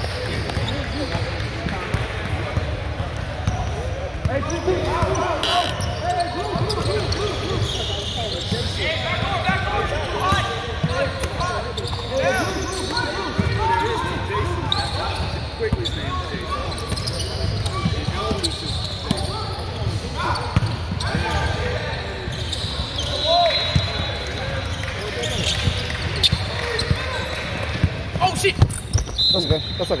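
Basketball game sound in a large gym: a ball dribbled on the hardwood court under steady background talk from players and spectators, with a few short high squeaks from sneakers about three-quarters of the way through and near the end.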